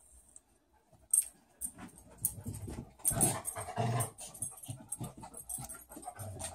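A pet dog making irregular noises, starting about a second and a half in and strongest around the middle, with a single sharp click just before.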